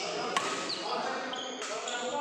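Badminton rally: a sharp racket-on-shuttlecock hit about a third of a second in, with shoes squeaking on the court floor.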